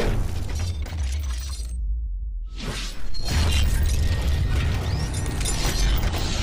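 Cinematic sound design for an animated intro: metallic crashes and whooshes over a deep bass rumble. The upper crashing sound cuts out for under a second about two seconds in, then comes back louder.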